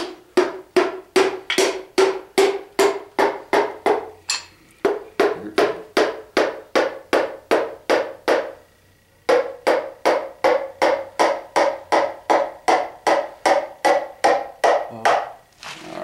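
A wooden hammer handle tapping the piston crown of a small-block Chevy 350 about two and a half times a second, each tap with a short ringing note, driving the ringed piston down through a ring compressor into its cylinder bore. The tapping stops briefly twice, and after the second pause, about nine seconds in, the ringing note is higher.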